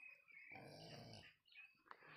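Near silence, with one faint animal sound lasting under a second near the middle.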